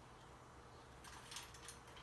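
Near silence: room tone with a faint steady hum. A few faint short scrapes come in about a second in, as mixed vegetables are spooned from a small cup into a metal pot.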